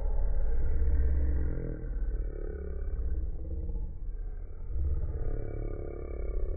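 A child's voice played back in slow motion, stretched and lowered into a deep, drawn-out rumble that swells and fades. It is loudest in the first second and a half.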